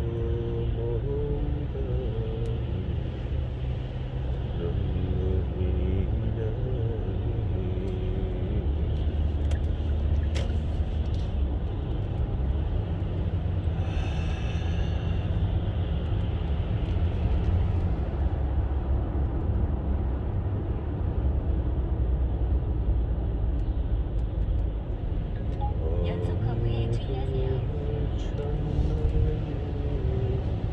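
Steady low road and engine rumble inside a moving car's cabin, with a voice singing a wavering melody at times, near the start and again near the end.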